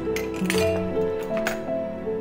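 Glass bottles clinking about three times as they are handled and filled through a small metal funnel, over calm background music with slow held notes.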